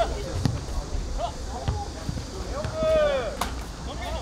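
Football players shouting calls to each other on the pitch, one long loud shout about three seconds in, with a few dull thuds of the ball being kicked.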